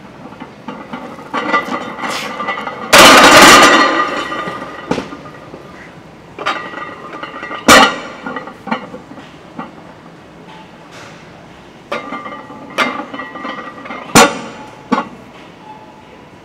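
A heavily loaded barbell with iron plates being racked into the steel hooks of a bench-press rack, a very loud metal crash about three seconds in that rings on briefly. After it come sharp clanks of weight plates knocking on the bar sleeves, the loudest near eight and fourteen seconds.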